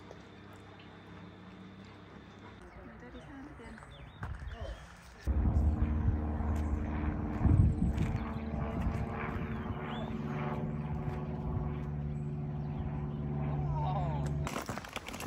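Supermarine Spitfire's V12 piston engine droning overhead. It comes in suddenly about five seconds in, is loudest a couple of seconds later, and holds a steady, even note, with a second pitch joining later on.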